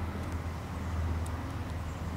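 An engine idling: a steady low hum that does not change.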